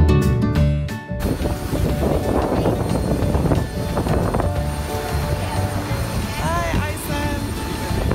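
Background music that cuts off about a second in, giving way to the steady rumble of an airport apron. Passengers' voices are heard, rising briefly near the end.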